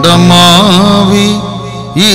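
A man singing a devotional song into a microphone: a long sustained sung note with a wavering ornament about half a second in, fading toward the end, over steady held tones.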